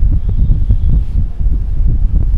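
Loud, uneven low rumble of air buffeting the microphone, with no distinct sound above it.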